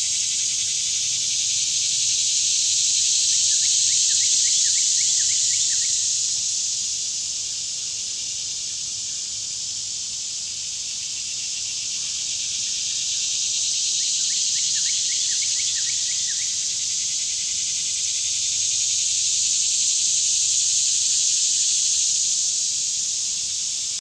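A loud, steady, high-pitched chorus of insects in summer woodland, swelling and fading slowly. Twice a bird gives a short run of quick chirps, about four seconds in and again about fifteen seconds in.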